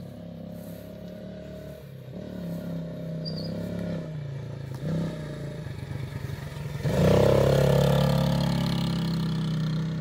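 Small kids' four-wheeler ATV engine running as the quad drives over grass, growing gradually louder as it nears. About seven seconds in it becomes much louder and holds there, with a falling pitch as it passes close.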